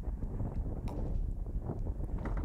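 Wind rumbling on a bicycle-mounted action camera's microphone at about 41 km/h, a steady low buffeting.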